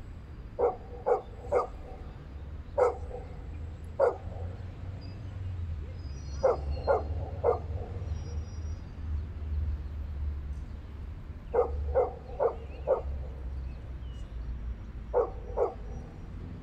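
A dog barking in short runs of one to four barks, about fourteen in all, over a steady low rumble.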